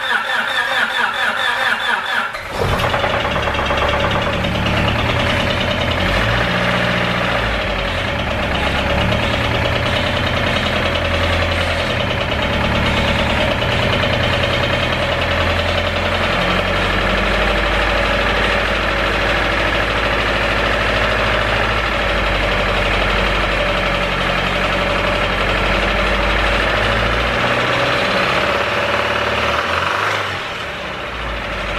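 Honda Civic EK engine cranking on the starter, catching about two and a half seconds in, then running unevenly with its speed rising and falling. The motor has rod knock that the owner says has got worse, and it tends to stall unless kept on the gas.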